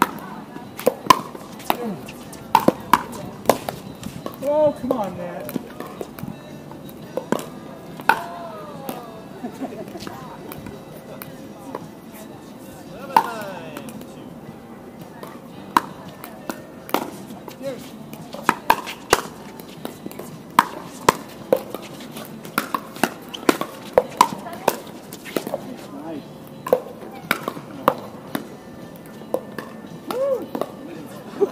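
Pickleball paddles striking the hard plastic ball in rallies: dozens of sharp, irregularly spaced pocks, with voices calling out a few times between them.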